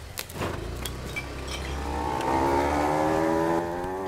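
Motor scooter engine pulling away: a few light clicks and a low running hum at first, then the engine note rises steadily as it accelerates, easing off just before the end.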